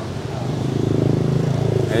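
A motorbike engine running on the street close by, growing louder over the first second as it approaches, then holding steady.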